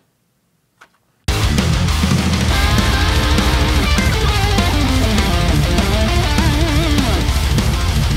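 Playback of a metal track: distorted rhythm guitars, drums and bass start about a second in, with a lead electric guitar solo full of bends and vibrato on top. Volume automation pulls the rhythm guitars slightly down under the solo, and the solo ends near the close.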